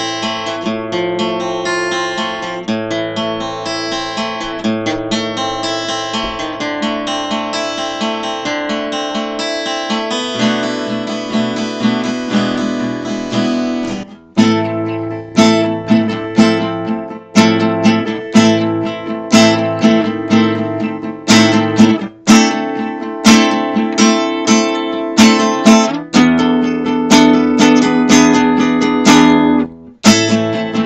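Alvarez acoustic-electric guitar being played: for the first half, notes ring over one another in a smooth, continuous flow; after a brief break about halfway, the playing turns to sharply accented strummed chords in a steady rhythm.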